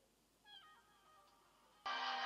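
A cat meowing once, a drawn-out call falling in pitch over about a second. Just before the end a loud electronic tune starts, the ringtone of a mobile phone.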